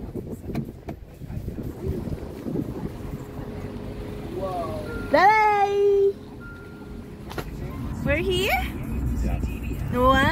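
Car cabin road rumble with a child's high-pitched wordless vocalizing: a rising, held call about five seconds in and another shorter one near the end.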